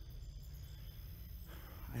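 Low rumbling handling and wind noise from a handheld camera carried on foot through tall grass, with faint steady high-pitched insect trilling behind it.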